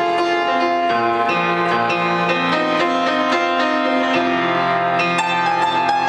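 Upright piano played solo, sustained chords and melody notes with the harmony changing every second or so.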